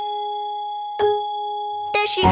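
Clock bell chiming the hour of two: a ringing bell tone, struck again about a second in, each strike ringing on steadily.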